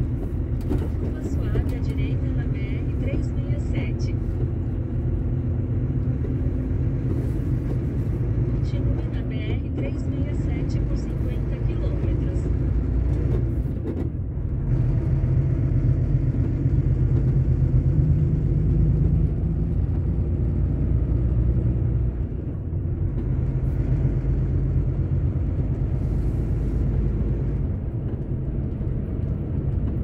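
A truck's diesel engine running under way, heard inside the cab as a steady low rumble. Its note climbs as the truck accelerates, with brief dips twice along the way. Light, rapid clicks sound in the first half.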